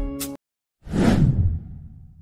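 Background music stops abruptly; after a short gap a loud whoosh sound effect sweeps in, sinking in pitch and fading away, used as a transition to a logo card.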